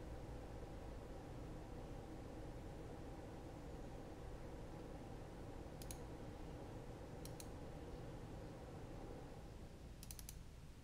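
Computer mouse double-clicks opening folders, twice near the middle and once more at the end, over a steady low room hum.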